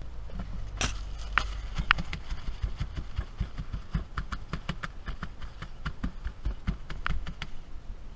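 Paper towel being pressed and dabbed over raw fish fillets on a paper-lined metal tray: a run of irregular small crinkling clicks and taps with low handling rumble underneath.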